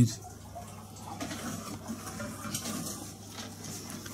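Soft, irregular rustling and handling noise as a six-foot animatronic skeleton butler in a cloth jacket and shirt is moved by hand, the fabric brushing close to the microphone.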